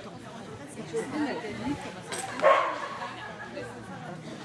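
A dog barks once, sharply and loudly, about two and a half seconds in.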